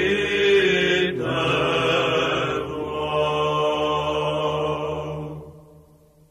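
Orthodox church chant: voices singing sustained notes over a steady low held note, then the final note dies away about five and a half seconds in.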